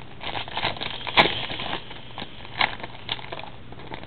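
Foil trading-card pack wrapper crinkling and tearing as it is opened, in a run of irregular crackles with the sharpest about a second in.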